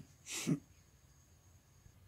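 A man's short breathy exhale or snort about half a second in, then quiet room tone with a faint steady high-pitched whine.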